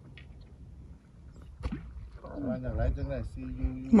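A low, steady rumble, then a person's voice talking from about two seconds in, growing louder toward the end.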